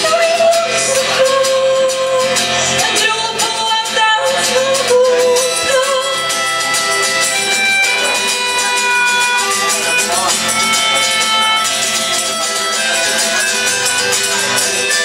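Live acoustic song: an acoustic guitar strummed under a melodica playing held melody notes, with a woman's singing voice in the first few seconds.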